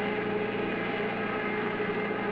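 Cartoon sound effect of a car engine running at a steady speed, a constant drone at one unchanging pitch.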